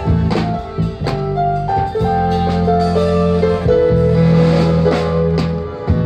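Live band playing an instrumental passage through a PA: guitar and drum kit, with a melody in long held notes that step in pitch over a steady low bass line.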